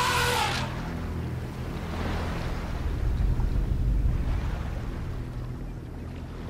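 An elephant trumpeting, a loud call that rises and falls and ends within the first second, followed by a steady low rumble and wash of churned water as it wades among the hippos.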